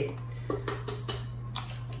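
An egg being cracked on the rim of a stainless steel mixing bowl: a handful of short, sharp taps and clicks spread over about a second and a half, over a steady low hum.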